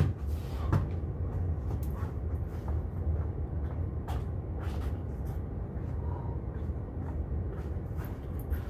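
A steady low rumble with a few faint knocks scattered through it.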